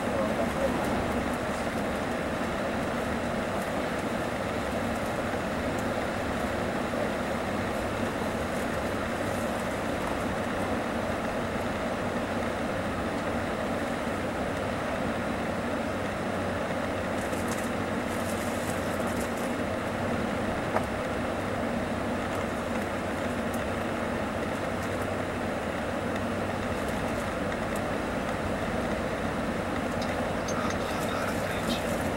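Steady road and wind noise inside the cabin of a Mercedes-Benz O-500RSDD double-decker coach cruising on the highway, with an oncoming truck passing in the first second. There is a single click about 21 seconds in.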